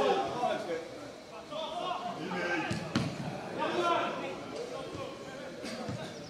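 Live football-match sound from the pitch: voices of players and onlookers calling out, with a few sharp thuds of the ball being kicked, the loudest about three seconds in.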